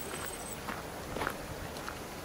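Footsteps on a dirt track: a few soft steps over a steady outdoor hiss. A thin, high steady whine fades out about half a second in.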